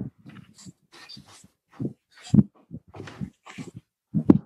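Soft, irregular whimpering: a string of short breathy sounds, sniffs and gasps, some with a low voice in them.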